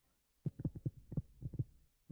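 Stylus writing on a tablet screen, heard as a quick run of about eight soft, low knocks starting about half a second in.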